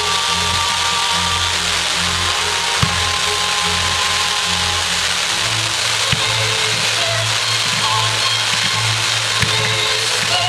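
Firework display set to music: a steady hiss of firework fountains and comets over the music, with a sharp bang about every three seconds.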